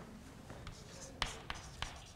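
Chalk writing on a blackboard: faint at first, then three sharp taps of the chalk about 0.3 s apart in the second half.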